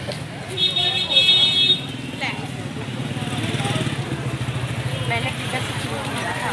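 Busy street traffic: a motorcycle engine running close by, and a vehicle horn sounding once for about a second near the start as the loudest sound. Voices of passers-by are mixed in.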